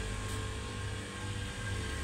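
Steady low rumble and hum of shop room tone, with no distinct event standing out.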